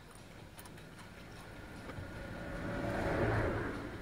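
A vehicle passing by outside, heard from inside a parked van: it swells up in the second half, loudest a little after three seconds in, then fades away.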